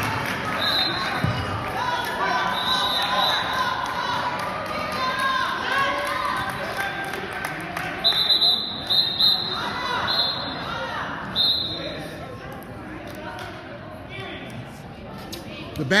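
The sound of an indoor basketball game: indistinct voices echo around the gym, broken by short, high squeaks that all have the same pitch. There is one squeak near the start, another a couple of seconds later, and a quick run of them about eight to twelve seconds in.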